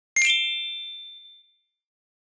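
A single bell-like ding sound effect: one strike about a fifth of a second in, ringing with a few high clear tones that fade out over a little more than a second.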